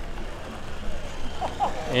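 Outdoor background ambience: faint chatter of other voices over a low steady rumble.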